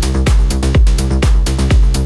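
Melodic techno / progressive house music: a steady four-on-the-floor kick drum about twice a second under sustained bass and synth tones, with hi-hats between the kicks.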